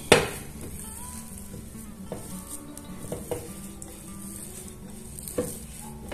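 A wet hand squeezing and pressing a coarse, damp dough of oats, mashed beans, seeds and nuts in a ceramic bowl: a soft squelching rustle. There is a sharp knock against the bowl right at the start and a few fainter knocks later.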